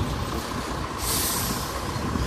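Low rumble of a large coach bus running nearby, with a short burst of air hiss about a second in.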